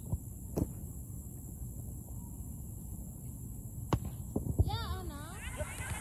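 Low steady rumble on the phone microphone, broken by a few sharp thuds of a soccer ball being kicked. About five seconds in, a voice calls out with a wavering pitch.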